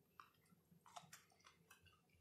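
Faint chewing of a bite of peanut butter and jelly sandwich with a hot pepper inside: a few soft, irregular mouth clicks and crackles.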